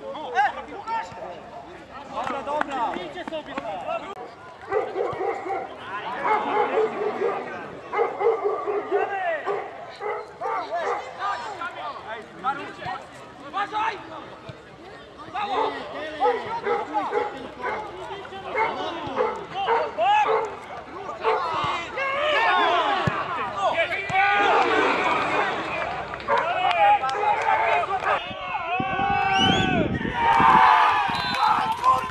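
Men's voices shouting and calling out across a football pitch, louder and busier over the last several seconds.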